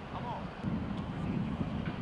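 Indistinct voices of a group outdoors over a low rumble that grows louder about half a second in.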